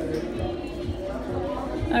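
Background music with held notes, under indistinct chatter.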